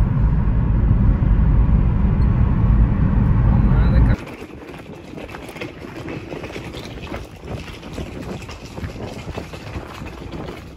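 Loud low rumble of a car driving on a motorway, heard from inside the cabin, for about four seconds. It cuts off abruptly to a much quieter, steady outdoor hiss of wind on the microphone.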